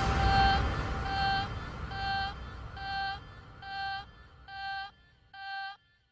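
Electronic dance music winding down: a single synth note pulses about once a second over a low rumble that fades away, leaving the bare note repeating near the end.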